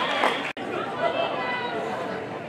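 Many overlapping voices of players and people on the sidelines, chattering and calling out. The sound breaks off for an instant about half a second in.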